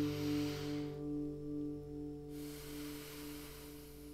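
A held chord rings on and slowly fades, one note pulsing, as a long breath is heard in the pause: a breath in, then about two seconds in a long breath out.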